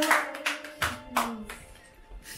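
Hand clapping in a quick even rhythm, about four claps a second, that thins to a few last claps and stops within the first second or so.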